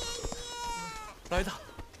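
A young girl wailing "grandpa" in a long, high, drawn-out cry, followed by a shorter sobbing cry about one and a half seconds in.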